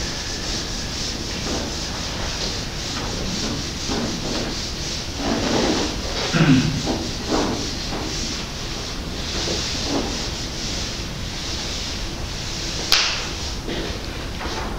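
Whiteboard eraser wiping marker off a whiteboard in repeated scratchy strokes, with a single sharp click near the end.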